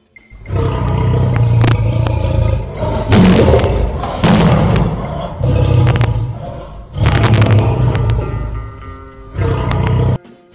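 A lion roaring as a sound effect over intro music, in several loud surges with sharp booming hits. It cuts off abruptly at the end.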